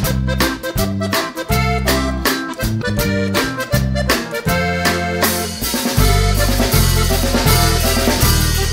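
Background instrumental music with a steady rhythmic beat and bass line, growing fuller and louder about six seconds in.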